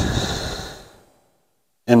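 A man's sigh: one long breath out that starts sharply and fades away over about a second.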